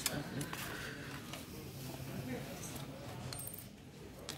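Faint metallic clinks and scrapes of a hand tool working at a motorcycle's rear brake pedal pivot as the pedal is being loosened for removal.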